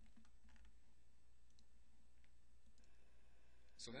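Near silence with a low steady hum and a few faint, scattered clicks of a computer mouse as the document is scrolled and the cursor moved.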